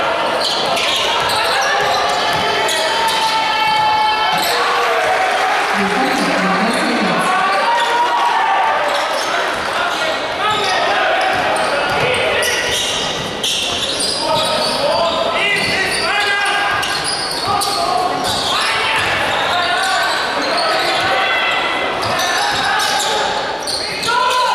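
Live basketball game in an indoor arena: a basketball bouncing on the hardwood court and players' and crowd voices shouting and calling, echoing in the hall.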